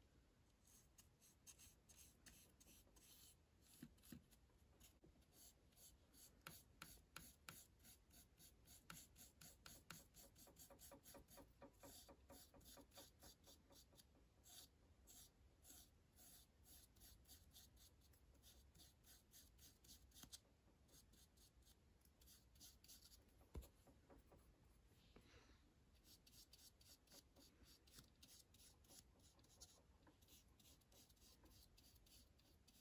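Faint, quick strokes of a small paintbrush dragging acrylic paint across a wooden birdhouse roof, coming in runs with short pauses, and one sharper light tap a little past two-thirds of the way through.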